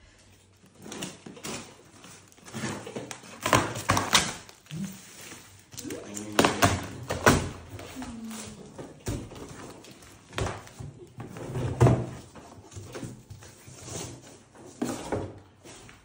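A cardboard box being opened by hand: a knife slitting packing tape, then cardboard flaps being torn and pulled open, with irregular scrapes, rips and thunks of cardboard.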